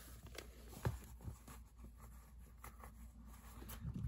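Faint rustling and a few soft clicks of a fabric-and-paper journal cover being handled as a small metal eyelet is fitted into a punched hole.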